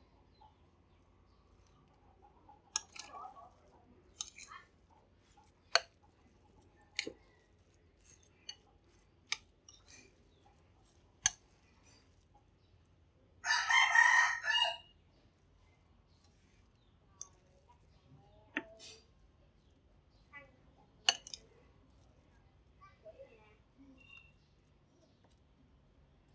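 Light scattered clicks and taps of a metal spoon against a bowl and the filling as it is scooped and spread on a nori sheet. About halfway through comes a single brief high call, about a second long, louder than the spoon sounds.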